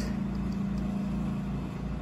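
Steady low hum of running equipment, unchanging throughout.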